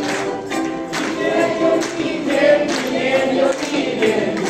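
A mixed group of men's and women's voices singing a Chinese song together in unison, with ukuleles strumming along.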